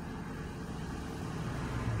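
Steady low rumble of a car, heard from inside its cabin.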